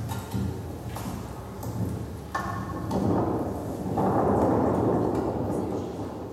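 Axe strikes on firewood, a few sharp knocks in the first couple of seconds. A loud rushing noise then swells and fades away.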